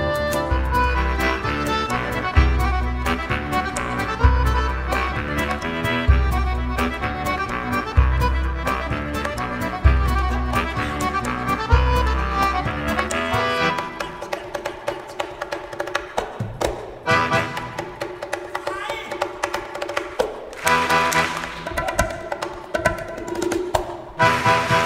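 Live Danish folk band playing an instrumental tune on accordion, bass clarinet, drum kit and keyboard, over deep bass notes that pulse about every second and a half. About fourteen seconds in the bass drops away, leaving the accordion over sparser playing with sharp percussive clicks.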